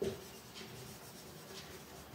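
Marker pen writing on a whiteboard: faint scratchy strokes of the felt tip as a word is written.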